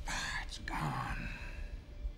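A man speaking in a low, breathy near-whisper, with a hiss of breath in the first half-second and quieter in the second half.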